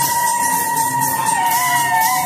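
Dance music with tambourines jingling in rhythm under a long, steady high note; a second, lower note joins about halfway through.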